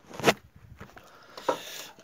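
Handling noise of a phone being picked up and carried: a short rub and a sharp knock about three quarters of the way through, then a hissy scraping.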